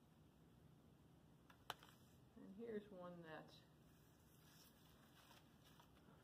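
Near silence: quiet room tone, with one sharp click a little under two seconds in and a brief faint voice about three seconds in.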